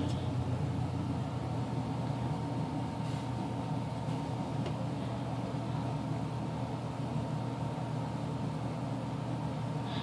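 A steady low mechanical hum, like a motor or appliance running, with a couple of faint clicks.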